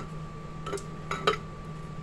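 A utensil scraping and clinking against the inside of a blender jar as homemade brown sugar is scooped out, with a few light taps.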